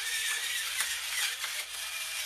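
Celtic sea salt being dispensed over sliced cucumbers: a steady gritty hiss with faint ticks through it.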